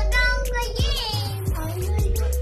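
Background music with a steady bass-and-kick beat and a sung vocal line.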